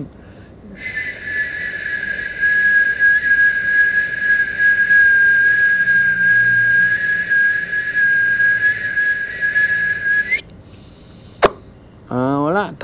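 A single long whistled note held steady for about nine and a half seconds, dipping slightly in pitch at the start and lifting at the end, followed by one sharp click near the end.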